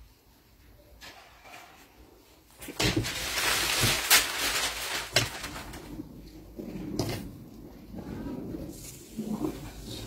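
After a quiet start, paper rustling and a few sharp knocks as a long wooden ruler is handled and laid along the edge of kraft pattern paper on a table, followed by quieter handling noises.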